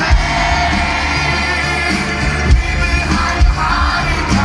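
Live rock band playing loudly, with a male lead vocalist singing into a microphone over guitars, drums and heavy bass.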